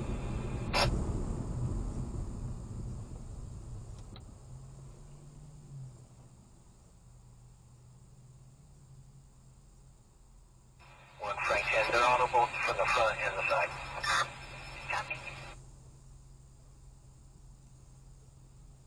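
Police radio scanner: a burst of garbled dispatch voice through a small radio speaker, about 11 seconds in and lasting about four seconds. Before it, car road and tyre noise fades as the car slows to a stop.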